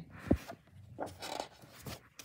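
Paper booklet being handled and closed: a sharp thump about a third of a second in, then a few short rustles of paper pages.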